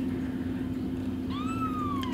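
Newborn Bengal kitten giving one thin, high mew past the middle, rising and then slowly falling in pitch, over a steady low hum.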